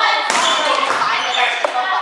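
A volleyball struck hard at the start, with a second ball impact a moment later, amid players' shouting voices echoing around a gymnasium.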